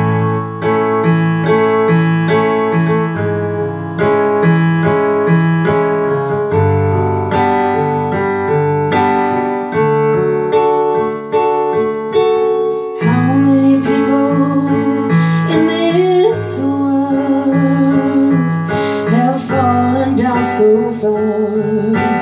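Digital keyboard played with a piano sound, chords repeated in a steady rhythm. A little past halfway through, a woman's voice comes in singing over the keyboard.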